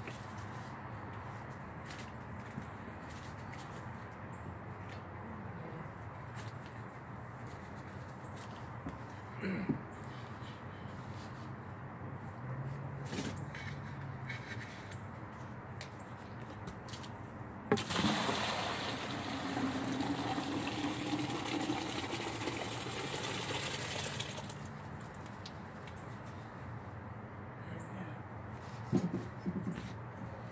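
Cooked corn and its soaking liquid poured from a stockpot into a plastic bucket: a gush of liquid and grain lasting about six seconds, starting a little past the middle. Before it come a few light knocks.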